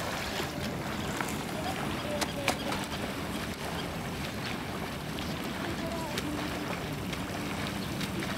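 Steady outdoor wind and river-water noise, with a few faint distant voices and light clicks.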